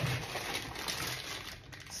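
Plastic candy bags crinkling and rustling softly as they are handled, dying down near the end.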